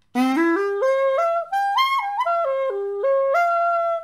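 A xaphoon (single-reed pocket sax) playing a quick C major arpeggio (C, E, G) up through its range and back down, note by note, then rising to end on a held note.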